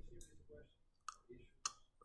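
A man's faint, indistinct speech, broken by two sharp clicks, one about a second in and one near the end.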